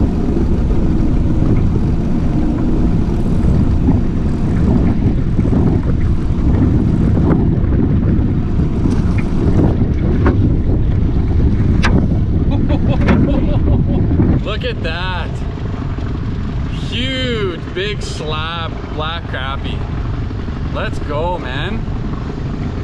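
Strong wind buffeting the microphone, a heavy low rumble that drops away abruptly about fourteen seconds in. After it, voices come through over softer wind noise.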